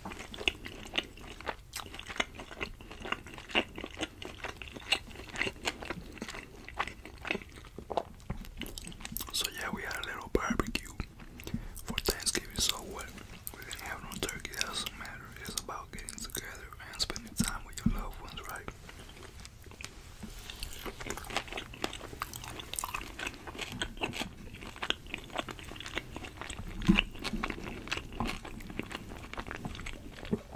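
Close-miked chewing and biting of grilled meat and rice, full of short wet mouth clicks and smacks throughout.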